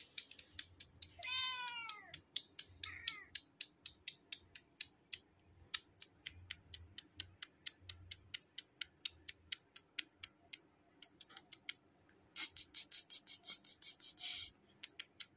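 A cat meowing twice: a longer call about a second in and a shorter one soon after. Around them runs a long series of sharp clicks, several a second, which crowds into a fast burst near the end.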